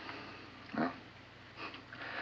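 A pause in dialogue: a man says a single short "Well," about a second in, over a low steady background hiss and hum.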